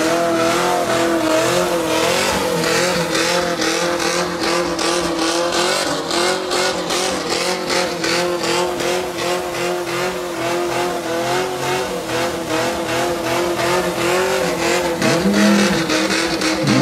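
Chevrolet Chevelle's engine held at high revs in a burnout, its note wavering slightly while the rear tyres spin.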